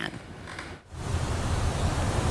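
Faint hiss, a brief dropout a little under a second in, then the steady outdoor background of a live roadside microphone: a low rumble under a hiss.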